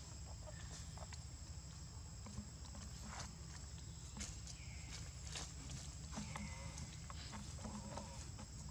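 Steady high-pitched drone of insects, with faint short chirps and clicks scattered through it.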